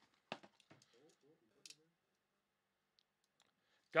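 Sealed cardboard trading-card boxes being handled and set down: a sharp knock about a third of a second in, then a few light clicks and taps.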